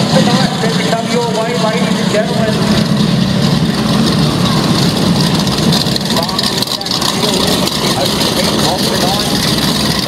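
A field of Limited Sportsman speedway cars with their engines running steadily at low speed, rolling together in formation before the start, with a public-address commentator's voice over the top.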